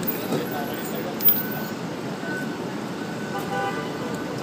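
Steady outdoor street background noise of traffic and voices, with a short pitched tone, a toot, about three and a half seconds in.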